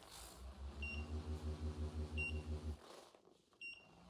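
Cordless knee massager's vibration motor humming faintly in a pulsing rhythm, about six pulses a second, then stopping about three seconds in. Its control buttons give three short high beeps as they are pressed to step up the heat.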